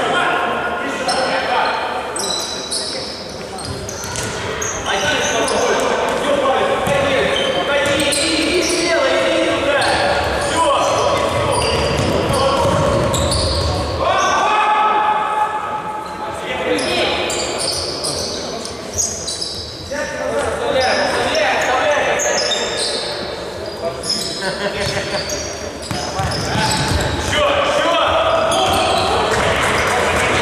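Futsal game in an echoing sports hall: voices calling out across the court over the knocks of the ball being kicked and bouncing on the wooden floor.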